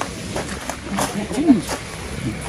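A person's voice: one short, faint vocal sound about one and a half seconds in, over a steady background hiss with a few faint clicks.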